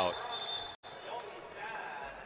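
A basketball being dribbled during a 3x3 game, over crowd noise. A steady high tone sounds through the first second, and the audio drops out for an instant just under a second in.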